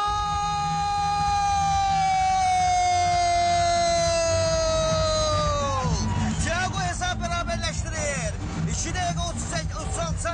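A TV commentator's long drawn-out goal shout, held for about six seconds with its pitch slowly sinking before it drops away, over an arena crowd. Excited speech follows.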